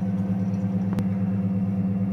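Steady low hum of a Class II biological safety cabinet's blower running, with a single sharp click about a second in.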